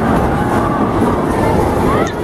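Steady rolling rumble of bowling balls on wooden lanes in a bowling alley, with voices faintly underneath.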